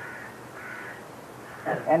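Faint bird calls in the background, two short calls in the first second, then a man's voice resumes near the end.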